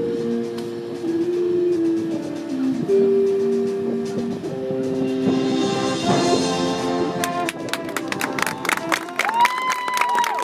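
Marching band playing: the winds hold sustained chords that shift from one to the next, then sharp percussion hits start about seven seconds in, under a higher held note near the end.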